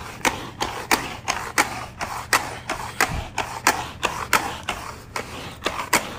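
ChomChom pet hair roller rolled back and forth over carpet, its roller mechanism clicking about three times a second as it collects hair.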